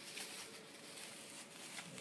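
Faint crinkling of clear plastic wrapping being pulled off a bottle by hand, a few soft rustles over a low hiss.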